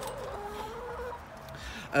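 Hens clucking quietly, with a few drawn-out, wavering low calls.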